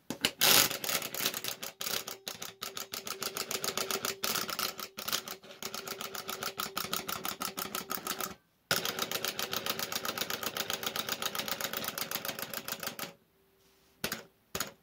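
Small plastic wind-up hopping toy (an eyeball on two feet) running down its spring, its clockwork mechanism buzzing as it hops very rapidly, about ten fast clicks a second. There is a brief break a little over halfway through, then the clicking stops about a second before the end.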